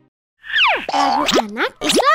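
Cartoon sound effects: a quick run of springy 'boing' swoops, with pitch sliding down and back up several times, after a short silence.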